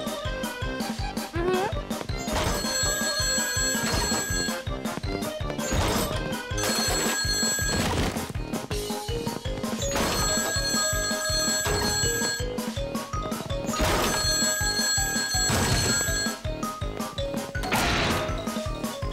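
A telephone ringing in rings about two seconds long, four times at roughly four-second intervals, over background music with a steady beat.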